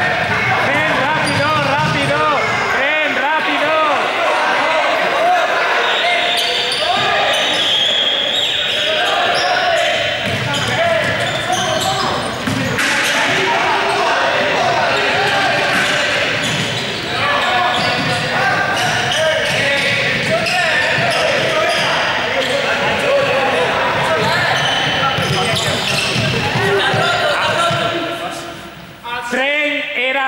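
A large group of students shouting and cheering in an echoing sports hall, over running feet thudding on the court floor; the noise dies down near the end.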